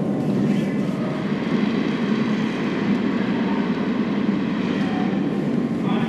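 Granite curling stone rumbling steadily as it slides down the pebbled ice.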